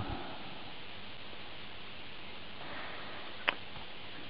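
Steady hiss of room and microphone noise, with one sharp click about three and a half seconds in from a hand on the Acer Aspire One netbook's controls.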